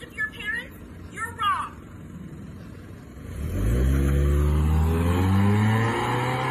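A car engine revving hard as the sedan accelerates away. The pitch rises steeply about three seconds in and then holds high and loud.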